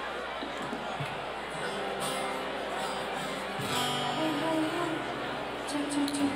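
Live band starting to play over crowd chatter: acoustic guitar and steady held instrumental notes come in about two seconds in, moving up in pitch partway through.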